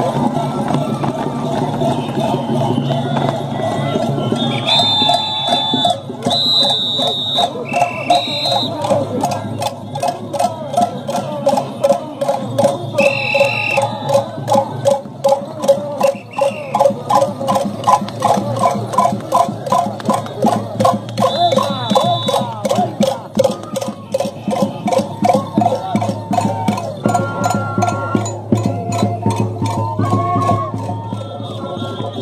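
Andean festival band music: end-blown flutes playing a fast repeating melody over a steady drum beat of about two strokes a second, with short high notes early on.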